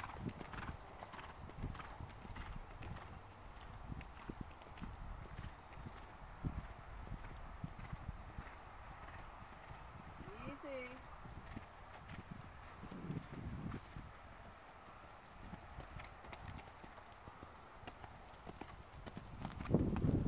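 Hooves of a horse cantering on arena sand: a run of dull hoofbeats.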